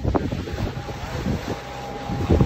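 Wind buffeting the microphone in uneven gusts on the open deck of a sailing catamaran.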